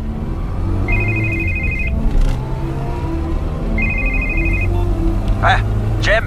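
A phone ringing twice, each ring a trilling tone about a second long, over the steady low hum of a car engine heard from inside the car.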